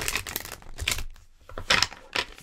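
Tarot cards being shuffled and handled: a quick, uneven run of clicks and rustles.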